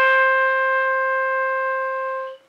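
Solo clarinet holding one long, steady note, with nothing accompanying it.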